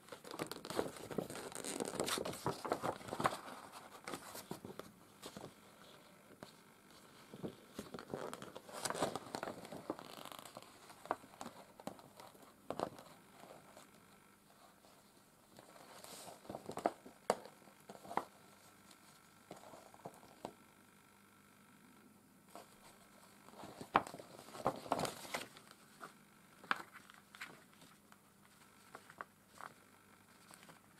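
Hands handling felt and paper craft materials close to the microphone: quiet rustling and crinkling with small taps and scrapes, coming in clusters a few seconds apart.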